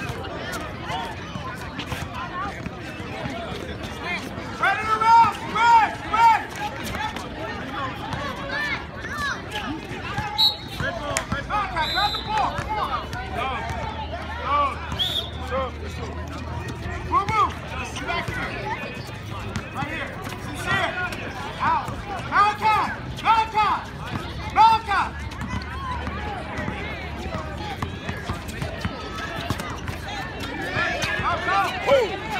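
A basketball being dribbled on an outdoor hard court, a series of sharp bounces through the whole stretch, with voices shouting during play, loudest in two spells a few seconds in and again past the middle.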